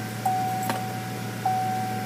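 GMC Yukon's warning chime sounding a steady tone that repeats about every 1.2 seconds, over the low steady hum of the engine idling after a remote start. A sharp click comes about two-thirds of a second in.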